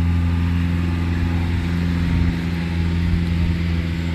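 An engine idling nearby: a steady, low, even hum.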